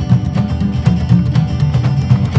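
Lively acoustic folk band playing an instrumental passage: an upright double bass carries a heavy bass line under a long-necked acoustic string instrument played in a quick, steady rhythm.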